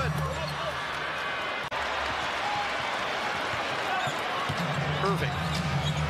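Court sound of an NBA game: sneakers squeaking on the hardwood and the ball bouncing over a steady crowd murmur. The sound drops out for an instant just under two seconds in.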